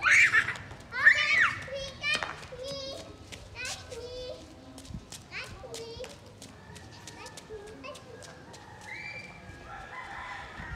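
Young children shouting and squealing high-pitched as they play, loudest in the first two seconds, then quieter scattered calls with faint short ticks in between.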